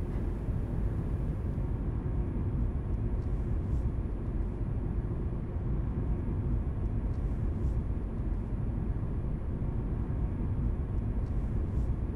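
Small hatchback car's engine running steadily at low revs, a continuous low rumble.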